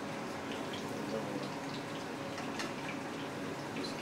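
Breaded chicken cutlets frying in oil in a pan: a steady sizzle with faint scattered crackles.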